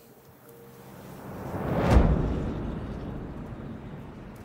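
A whoosh that swells up to a deep boom about two seconds in, then slowly dies away: a scene-transition sound effect.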